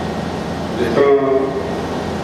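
A man speaking Punjabi into a microphone through a public-address system, over a steady hum, with a brief pause near the start and a drawn-out phrase in the middle.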